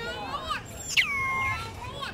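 Infant long-tailed macaque crying: a run of high-pitched cries, the loudest about a second in, dropping sharply in pitch and then held steady for about half a second.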